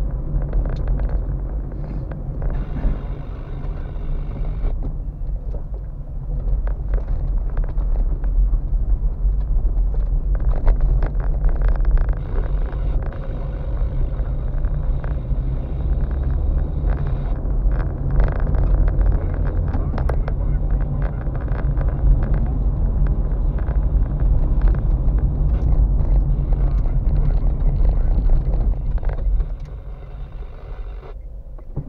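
Car driving slowly along a rough, potholed lane, heard from inside the cabin: a steady low rumble of engine and tyres with frequent knocks and rattles as it goes over the bumps. The noise drops just before the end as the car slows.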